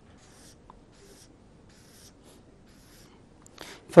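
Marker pen drawing a series of arcs on paper: faint, short scratchy strokes, several in a row.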